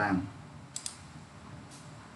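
Computer mouse clicks: two sharp clicks in quick succession a little under a second in, then a fainter click near the end, over quiet room noise.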